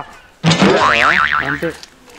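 Comic 'boing' sound effect: a sudden, loud wobbling tone that lasts about a second.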